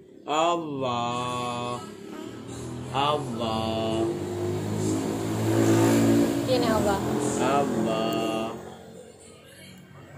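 A simple tune in held notes, with a vehicle passing by whose rumble swells to its loudest about six seconds in and then fades.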